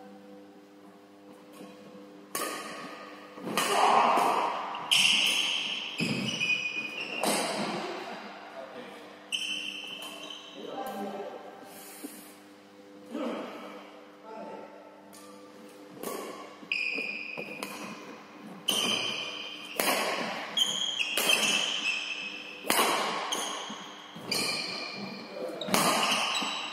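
Badminton rally in a hall: sharp cracks of rackets striking the shuttlecock, again and again at an irregular pace, mixed with short high squeaks of court shoes on the wooden floor and footfalls, echoing in the hall.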